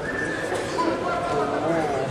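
Drawn-out shouted calls from several people in a large sports hall, overlapping at different pitches, over the hall's steady background murmur.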